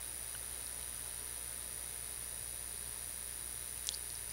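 Steady low electrical hum and hiss of the recording's background noise, with a faint high whine over it and one small click just before the end.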